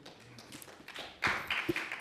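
Rustling of papers with a few light taps, picked up by a desk microphone. The taps come in the second half.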